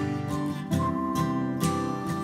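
Acoustic guitar strumming in an instrumental passage of a folk-pop song, chords struck a bit under a second apart over held notes.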